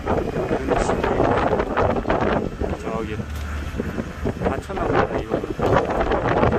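Vehicle driving along: steady ride and motor noise with wind buffeting the microphone.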